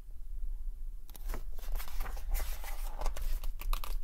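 Pages of a paperback picture book being turned and handled close to the microphone: quick papery rustling and crinkling that starts about a second in and carries on in short strokes.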